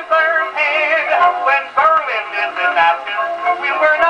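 1911 Columbia Grafonola Nonpareil wind-up gramophone playing a 78 rpm disc record: a man singing a wartime novelty song with band accompaniment, his voice wavering in a strong vibrato.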